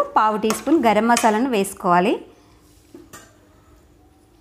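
Metal spoon stirring a thick yogurt and spice mixture in a nonstick pan, with light scrapes and a few short clinks against the pan. A woman talks over the first half; the clinks stand out in the quieter second half.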